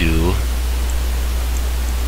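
A short spoken syllable at the very start, then steady hiss with a constant low hum underneath, the background noise of the recording.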